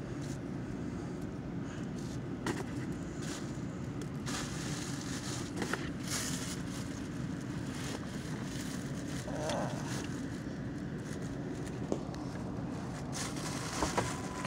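Steady low rumble of a car in motion heard from inside the cabin, engine and road noise, with a few brief light clicks and rustles.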